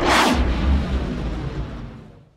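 A sudden whoosh that falls in pitch, then a deep rumbling boom that fades out over about two seconds: a produced whoosh-and-boom sound-effect sting.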